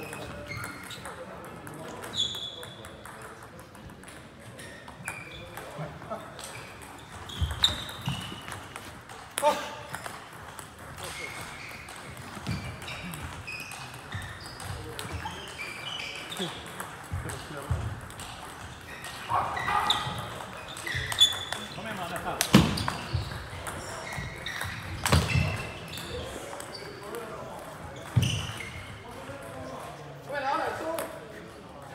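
Table tennis ball clicking against the bats and the table in rallies: scattered sharp knocks, coming thickest and loudest in the second half. Voices chatter in the background.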